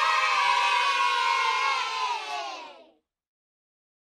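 Sound effect of a crowd of children cheering, one long drawn-out "yay" that slowly falls in pitch and fades out a little before three seconds in.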